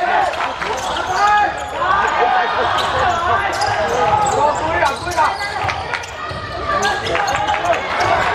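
A basketball being dribbled and bouncing on a wooden gym floor during live play. Shoes squeak and players call out, echoing in the hall.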